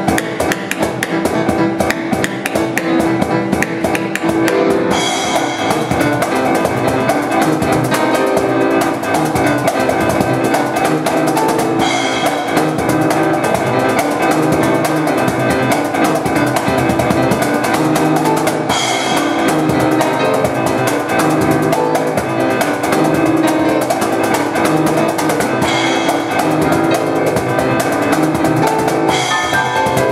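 Live instrumental music: piano sound from a Yamaha electronic keyboard over a steady cajon beat. Brighter cymbal strikes come about every seven seconds.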